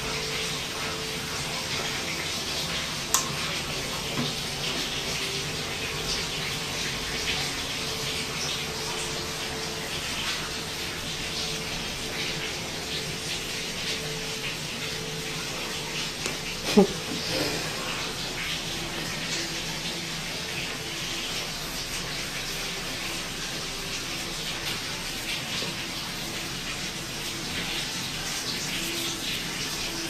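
A steady rushing hiss runs throughout, with soft rustling and handling of cloth as costume dresses are sorted and hand-sewn. There is a sharp click about three seconds in, and about halfway through comes a short falling squeak, the loudest sound.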